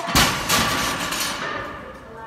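Heavily loaded deadlift barbell, about 700 lb of plates, hitting the gym floor as it is let go. There is a sharp impact just after the start, a second impact about half a second later as the bar bounces, then rattling that dies away.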